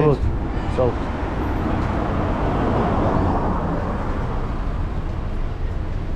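Street traffic on the road beside the walker, with a vehicle passing that swells up and fades away around the middle.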